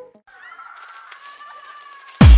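Break in a house track: the beat cuts out just after the start, leaving a faint sampled sound of wavering, gliding pitched tones, with a light hiss joining after about a second.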